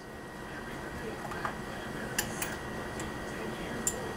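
A few sharp, light metallic clicks as a T-handle key is handled at the grips of a tensile testing machine, over a steady low hum.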